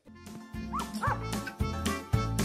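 A small dog yips twice in quick succession, about a second in, over background music with a steady bass beat.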